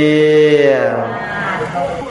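A monk's voice holding one long, drawn-out vowel during a Buddhist sermon. The pitch stays steady, then slides down and fades a little after a second in.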